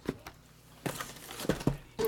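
Shrink-wrapped cardboard trading-card hobby boxes being pulled from a stack and set down on a table: a sharp click at the start, then a few short knocks in the second half.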